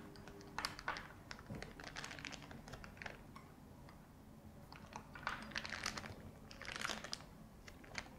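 Faint, irregular clicks, crinkles and scrapes as buttercream icing is scooped with a metal angled spatula from a glass bowl into a clear plastic disposable decorating bag, the bag crinkling in the hand.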